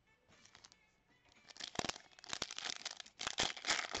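Foil trading-card pack wrapper being torn open and crinkled by hand, a rapid run of crackles and rips that starts about a second and a half in.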